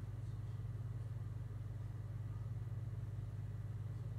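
A steady low hum with nothing else standing out.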